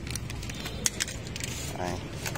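Hand-handled scooter ignition switch parts and key: a string of light plastic and metal clicks and rattles, with one sharper click a little before a second in.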